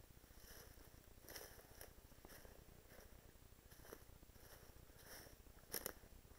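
Faint footsteps rustling through dry leaf litter on a forest floor, a step roughly every half second to second, with a louder rustle and click just before the end.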